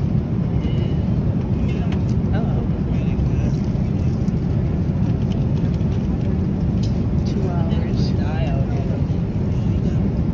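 Steady low drone of an airliner cabin at cruising altitude. Faint voices come through it now and then.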